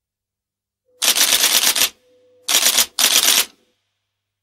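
Rapid mechanical clattering in three bursts, a long one of about a second and then two shorter ones close together, each a fast run of sharp clicks over a faint steady hum.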